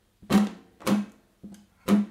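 Nylon-string acoustic guitar strummed slowly in a bluesy rhythm, four strummed chords about half a second apart, each ringing briefly and dying away; the third strum is lighter.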